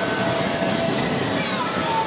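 Steady funfair din: a continuous noise of ride machinery and crowd, with voices mixed in and a few faint steady tones.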